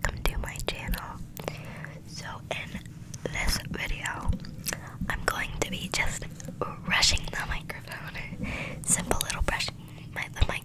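A young woman whispering close into a microphone, with frequent short, sharp mouth clicks throughout.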